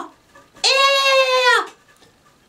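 One long, high bleating call, held steady and then falling in pitch at its end, like a goat's drawn-out "meeh".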